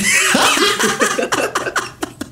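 Several people laughing together at once, hearty and overlapping, dying down near the end.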